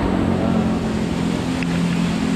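Steady, loud rumble of road traffic passing overhead, with a low engine hum running through it.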